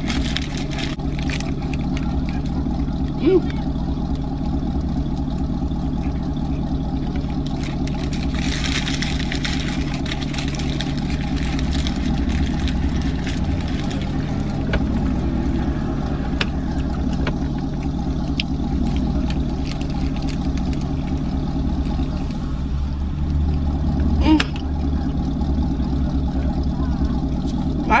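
Steady hum of a car idling, heard from inside the cabin, with the crinkle of a paper taco wrapper and mouth sounds of eating over it.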